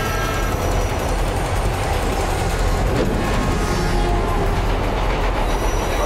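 A vehicle's horn blaring over the loud, steady rumble of a vehicle bearing down, from a TV drama's soundtrack.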